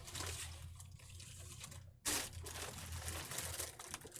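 Rustling of a small fabric backpack and its straps as it is pulled on over the shoulders, with one short, louder rustle about halfway through. A low steady hum runs underneath.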